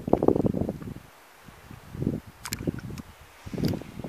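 Footsteps of a walker on grass and camera handling, heard as irregular soft thuds with light wind rumble on the microphone and a few sharp clicks.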